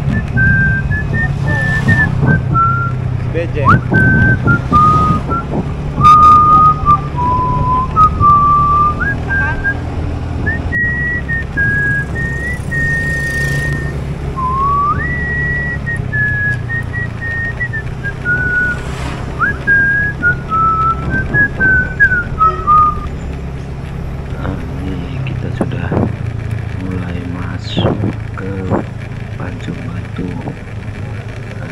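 A person whistling a slow tune, held notes stepping up and down, over the steady hum of a motorcycle engine; the whistling stops a few seconds before the end.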